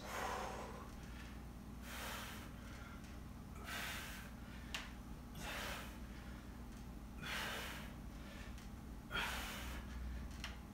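A man breathing hard during incline close-grip push-ups, one breath about every two seconds in rhythm with the repetitions.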